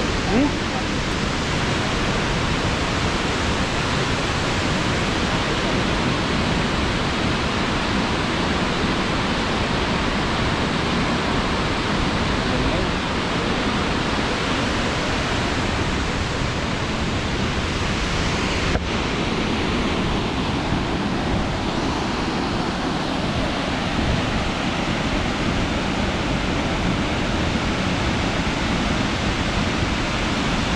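Burney Falls waterfall pouring into its plunge pool, a steady, dense rush of falling water with no let-up.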